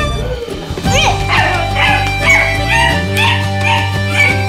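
Beagle puppy yipping and whining in a quick run of short, high cries starting about a second in, over instrumental background music.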